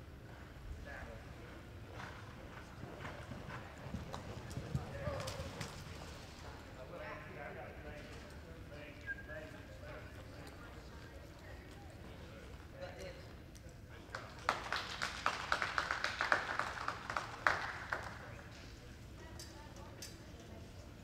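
Horse's hoofbeats on soft arena dirt during a reining run, with faint voices in the background. Near the end, a few seconds of scattered clapping from a small crowd.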